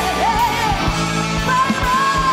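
Live soul-blues band music: a female singer belting a high, wordless wailing line with wavering pitch, then a held note, over electric guitar and drums.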